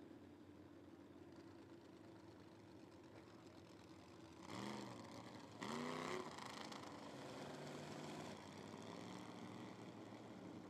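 Faint, distant engine idling. About halfway through, two short rising-and-falling swells break in, and the running is a little louder for a few seconds after them.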